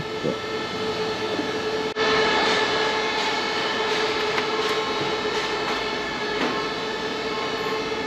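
Steady drone of running print-shop machinery: a constant hum carrying a mid-pitched tone with overtones, dipping briefly about two seconds in.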